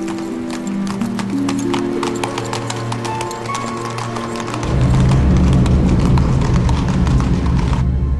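Several horses' hooves clip-clopping on stone cobbles as riders move off, over orchestral score music. About halfway through, the music swells into a loud, low, sustained passage.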